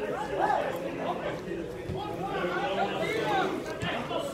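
Several people talking at once, a babble of overlapping voices. Two sharp knocks come through it, about two seconds apart.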